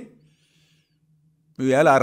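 A man's speech breaks off for about a second and a half, leaving near silence with a faint low steady hum, then he starts talking again near the end.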